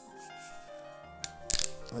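A few sharp clicks and cracks in the second half from a metal twist-off cap being forced open on a bottle, over background music.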